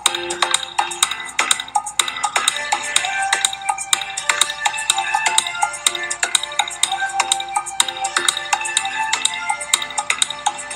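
Background music with quick, bright, ringing notes over a busy percussive rhythm.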